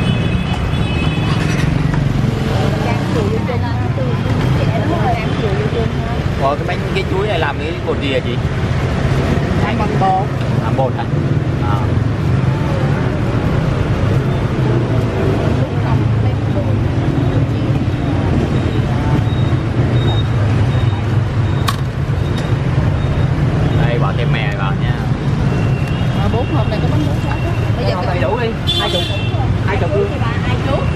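Steady street traffic rumble, with people talking in the background; a short high tone sounds near the end.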